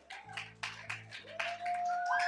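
Scattered hand claps from the congregation over sustained low keyboard chords, with a higher held note coming in about one and a half seconds in.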